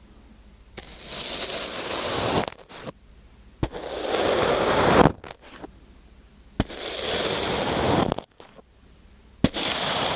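Metal fork stabbed into and drawn through kinetic sand packed in a wooden box: four crackling strokes of about a second and a half each, several opening with a sharp click.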